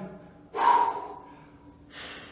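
A man's sharp, breathy exhale, sudden about half a second in and fading over about a second with a faint whistling note, followed by a softer breath near the end: hard breathing from exercise effort, close to the microphone.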